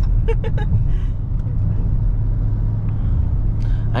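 Dodge Charger Scat Pack's 6.4-litre HEMI V8 and road noise heard from inside the cabin while driving: a steady low rumble, with a short laugh about half a second in.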